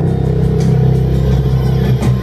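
Loud music with heavy, sustained bass notes.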